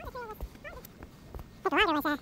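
Short high-pitched vocal sounds with a wavering, bending pitch, the loudest near the end, over faint scattered clicks.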